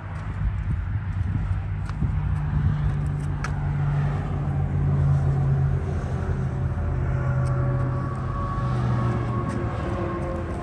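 Honda Monkey 125's single-cylinder four-stroke engine idling steadily.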